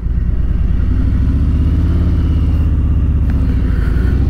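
Harley-Davidson Milwaukee-Eight V-twin of a 2019 Electra Glide Standard running under way as the bike comes out of a turn, its pitch rising slightly about a second in and then holding steady.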